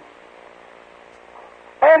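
A pause in an old recording of a man speaking: faint steady hum and hiss, then his voice comes back in near the end.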